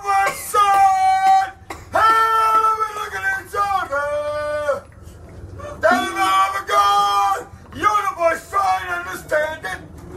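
A man singing loudly in long held notes, a new phrase every second or two with short breaks between them.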